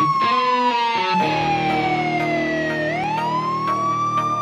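A police-style siren wailing over the intro of a country-rap track. Its pitch falls slowly, then sweeps back up about three-quarters of the way through. Underneath are guitar, a beat and a held low chord that comes in about a second in.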